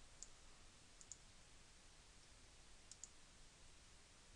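Faint computer mouse clicks over near-silent room noise: a single click, then two quick double clicks about two seconds apart.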